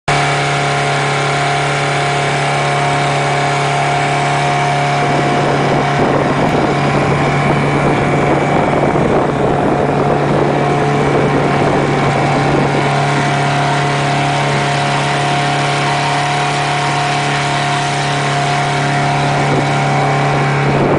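Small boat's outboard motor running at a steady cruising speed, a constant drone that holds one pitch. A rushing wash of wind and water noise comes over it from about a quarter of the way in until past the middle.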